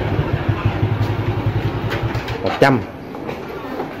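Small motorbike engine idling with an even, low putter that dies away about two seconds in.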